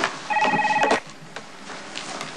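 Cell phone ringing: one short electronic trilling ring of several tones together, about three-quarters of a second long, starting a third of a second in.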